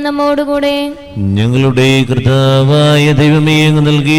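Sung liturgy of a Syro-Malabar Mass: a held sung note fades out about a second in, then a man's voice enters with a short rising glide and chants on a steady pitch.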